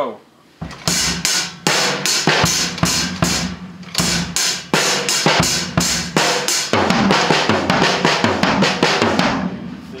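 Acoustic drum kit played with sticks in a steady pattern on snare and bass drum, with cymbal strokes; the drumming starts about half a second in and stops shortly before the end.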